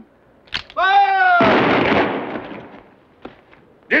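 A man shouts the order "Fire!" and a firing squad's rifles go off together as one loud volley, which echoes and fades away over about a second and a half. A few faint clicks follow.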